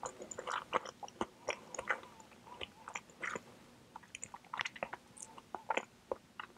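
Mango mochi ice cream being chewed close to the microphone: soft chewing with many small, irregular mouth clicks, easing off briefly about four seconds in.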